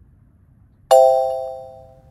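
A bell-like chime sound effect strikes once about a second in and rings out, fading over about a second; in this quiz it marks the reading of the kanji being revealed.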